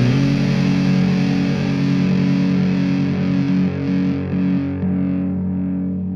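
Thrash metal music ending: a distorted electric guitar holds its notes after the drums drop out, shifting pitch a few times in the middle as the sound slowly fades.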